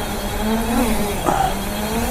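Mountain bike coasting past on asphalt, its rear freehub buzzing steadily.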